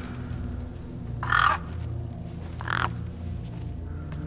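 A crow cawing twice, a longer, louder caw about a second in and a shorter one near three seconds, over a low, steady music drone.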